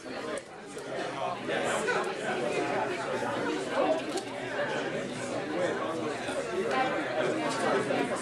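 Many people talking at once in small groups in a large room: a steady hubbub of overlapping conversations with no single voice standing out.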